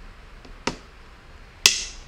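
Two sharp knocks about a second apart, the second louder with a short ringing tail.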